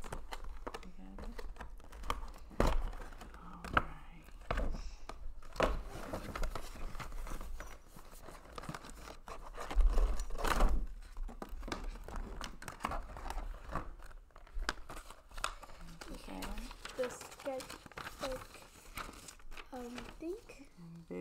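A cardboard toy box with a clear plastic front being handled and opened: irregular crinkling, crackling and tearing of the packaging, with a few louder knocks, the loudest about ten seconds in.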